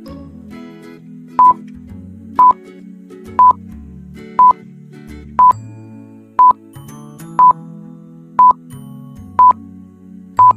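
Quiz countdown timer beeping: a short, loud, high beep once a second, nine in all, starting about a second and a half in, over soft background music.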